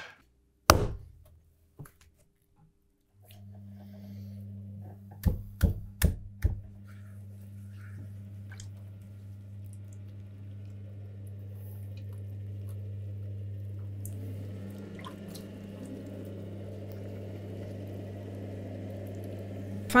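A loud knock just under a second in, then an electric potter's wheel starts with a steady low hum about three seconds in. A few sharp knocks follow soon after, then the wet squishing of hands working clay on the spinning wheel as a pot is thrown.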